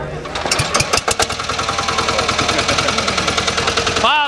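Two-wheel tractor (motocultivator) engine pull-started with its recoil rope, catching within the first second and then running steadily with a rapid, even knock.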